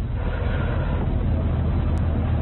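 Steady low rumble and hiss of background noise on an old videotape recording, in a pause between halting words. There is a faint click near the end.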